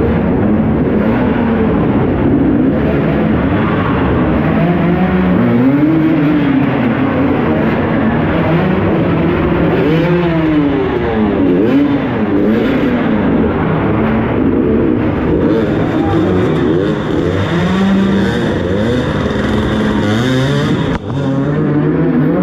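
Dirt bike engine revving up and down over and over as the rider works the throttle through an enduro trail, its pitch climbing and falling every second or two. The sound drops briefly about a second before the end.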